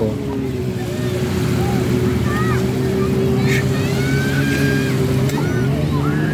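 Jet ski engine running steadily at low speed, its drone holding one even pitch for about five seconds before easing off near the end. Faint voices are heard over it.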